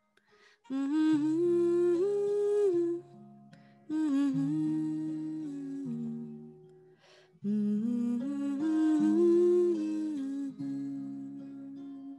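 A woman humming a slow, wordless melody with her mouth closed, in three phrases, over soft held acoustic guitar notes.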